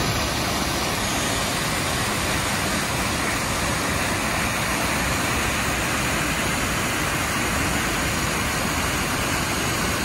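Whitewater of a mountain creek rushing over rock ledges, a loud, steady, unbroken rush.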